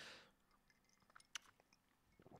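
Near silence: room tone, with a few faint short clicks a little past the middle.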